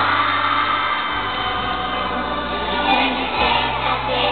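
A group of young children singing together, doing hand actions, over a music track with sustained low bass notes.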